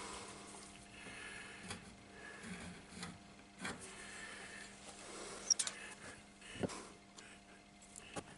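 Faint handling sounds of marking out a wooden block with a metal square: a few light, scattered knocks and scrapes of the square and wood against the table saw top.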